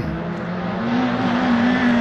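Race car engine held at high revs, its note steady and climbing slightly as the car comes on down the track, after a brief falling sweep in pitch right at the start.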